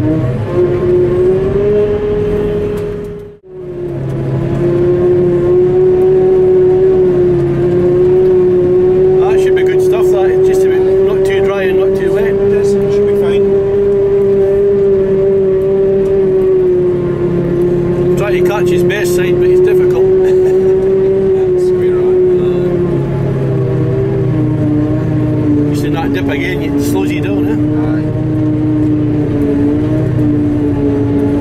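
Claas Jaguar 950 forage harvester running under load while chopping grass, heard from inside its cab: a loud steady machine whine over a low drone, the pitch sagging slightly in the second half. The sound drops out briefly a few seconds in.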